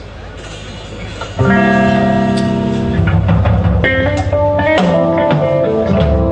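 Live band kicking in suddenly about a second and a half in: electric guitar and bass guitar sound a held chord, then the bass moves through changing notes with drum hits over it. Before the band starts there is only a lower background noise.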